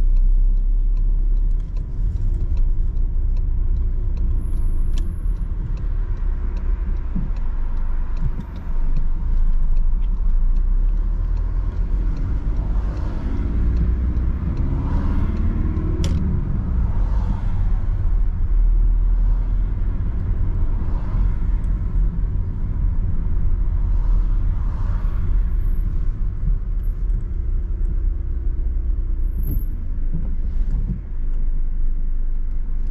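Car driving along heard from inside the cabin: a steady low engine and road rumble. About halfway through, the engine note rises and falls as the car accelerates. There is a single sharp click around the same time.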